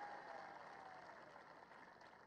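Near silence: a faint haze of background noise that slowly fades away.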